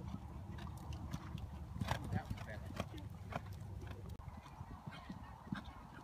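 A pony cantering on a sand arena, its hooves landing as irregular dull thuds over a steady low rumble, with a few short honk-like calls.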